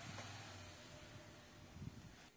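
Near silence: faint steady hiss with a low hum, room tone.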